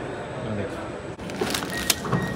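Plastic carrier bag rustling and crinkling as a hand rummages in it, a quick run of crackles in the second half, over a steady background hum.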